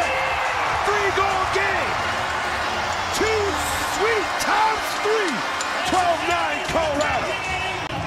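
Indoor arena crowd cheering after a goal, with many separate voices yelling and whooping over a dense background din, and a few sharp knocks.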